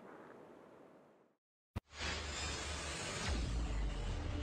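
Faint outdoor background fading out to dead silence, a single click, then, about halfway in, a loud rushing whoosh with a deep rumble that swells toward the end: the opening sound effect of the GearBest logo intro.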